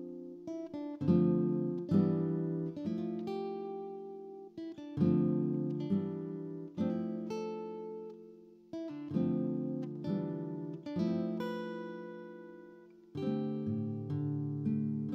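Background music: slow acoustic guitar chords, each struck and left to ring out and fade before the next.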